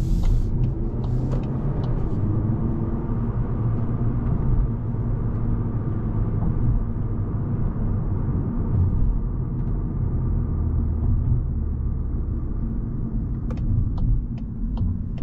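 Steady low rumble of road and engine noise inside the cabin of a Volkswagen Golf with the 1.5 TSI four-cylinder petrol engine, cruising at low speed.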